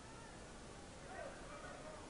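Faint gymnasium background during a basketball game: a low steady murmur of the crowd and court, with a few short, pitch-sliding squeaks from about a second in, like sneakers on a hardwood court.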